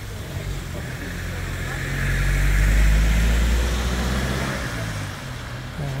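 A car drives past on a rain-soaked road, its engine and tyres hissing on the wet surface; the sound builds to a peak about halfway through and then fades.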